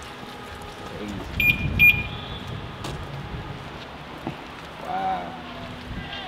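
Two short, high electronic beeps about half a second apart, over steady outdoor background noise.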